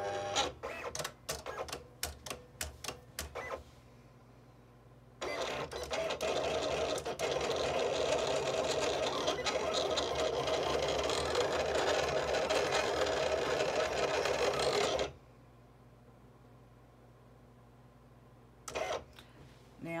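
Silhouette Cameo 4 cutting machine running a cut with its automatic blade. A quick run of sharp clicks comes first, then after a short pause about ten seconds of steady motor whirr as the carriage and rollers drive the blade and mat, stopping suddenly. A brief whirr follows near the end.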